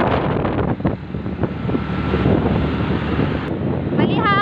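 Wind rushing over the microphone together with the engine and road noise of a moving motorcycle, a loud steady rush.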